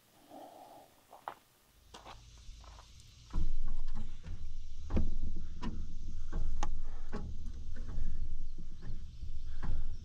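Scattered knocks and clicks of a man climbing a stepladder and handling a wooden rafter board, wood bumping against the frame. A low steady rumble comes in abruptly a little over three seconds in.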